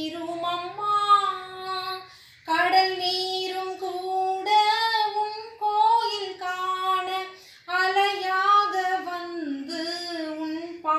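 A woman singing a Tamil hymn to Mary solo and unaccompanied in a high voice, breaking off briefly for breath about two seconds in and again past seven seconds.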